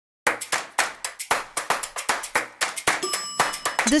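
A fast run of sharp percussive hits, about five a second, each dying away quickly. About three seconds in, a bright bell-like ding rings over them.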